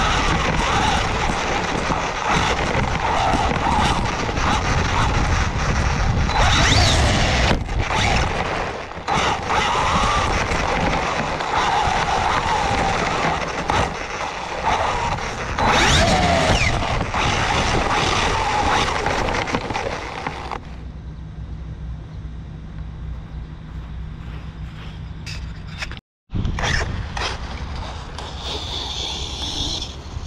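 Onboard sound of an Arrma Typhon 6S BLX RC truggy running over grass: loud wind and rattle with its brushless motor's whine rising and falling, and sharp knocks as it bounces and lands. About twenty seconds in the sound switches to a quieter, duller recording with a low steady hum.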